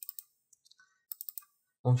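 Computer mouse and keyboard clicks in short quick clusters: a few right at the start and another run of about four just past halfway. A man's voice starts speaking at the very end.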